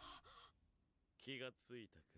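Near silence, with a faint sharp intake of breath at the very start and a few faint spoken syllables from about a second and a quarter in.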